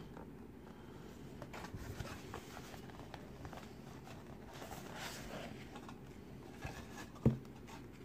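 Faint rustling and scraping of a cardboard box and its foam insert being handled, with one sharp knock about seven seconds in.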